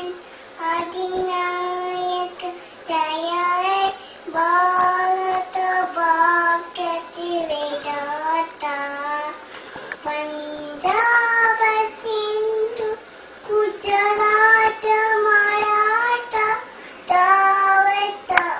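A toddler singing a tune in short phrases of held notes, with brief breaks between phrases.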